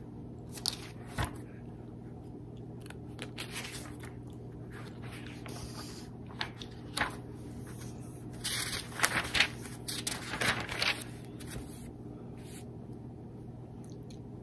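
Pages of a hymnal being turned and handled: scattered soft paper rustles and scrapes, busiest a little past the middle, over a steady low hum.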